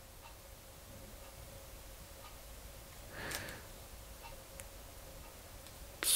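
Faint clicks and ticks of small plastic touch-protection caps being handled and fitted onto a busbar, with a short breathy sound about three seconds in, over a faint steady hum.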